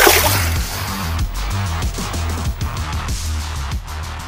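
Electronic backing music with a heavy, pulsing bass beat. Right at the start there is a short, loud splash as a released bass drops back into the water.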